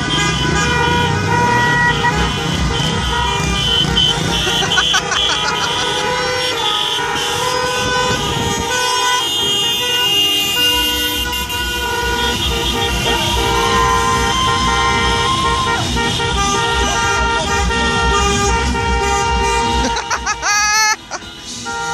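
Many car horns honking at once in a celebratory car parade: overlapping steady tones of different pitches that start and stop throughout, over the low rumble of car engines.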